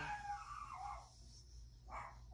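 A dog whining once, a high, wavering whine that slides down in pitch over about a second.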